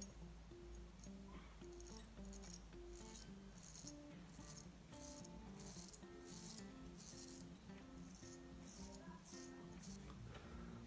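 Faint scraping of a stainless-steel straight razor cutting through lathered beard stubble, in a series of short strokes, under quiet background music.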